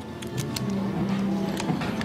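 Locker-room background: faint music and distant voices over a steady hum, with a few light clicks in the first half second.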